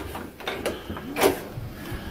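A few sharp mechanical clicks, then a louder short creak about a second in.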